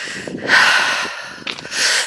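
A person breathing heavily close to the microphone while walking: a strong breath about half a second in that fades, then another building near the end. The walker is still a bit wheezy from illness.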